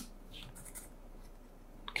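Faint scratching and handling sounds over a steady low hum.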